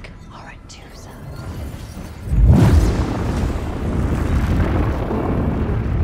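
A deep boom about two seconds in, which goes on as a sustained low rumble: a dramatic sound effect in a film soundtrack.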